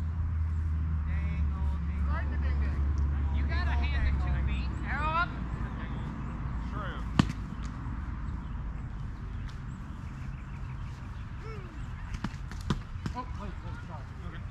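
Distant shouting voices of a foam-fighting melee over a low rumble for the first few seconds. Then sharp knocks of padded weapons striking: one loud hit about seven seconds in and a few more near the end.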